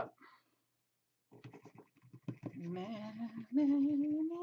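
Thinned acrylic paint being stirred in a small plastic cup: a quick run of light clicks and scrapes as the stirrer knocks against the cup, starting about a second in.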